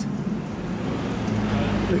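City street traffic with a steady low engine hum that swells slightly in the second half, under faint background voices.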